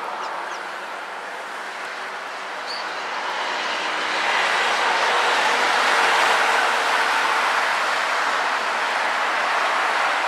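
A broad rushing noise, like a passing vehicle, swells over a few seconds and stays loud through the second half, with a single faint high chirp from the tree sparrows about three seconds in.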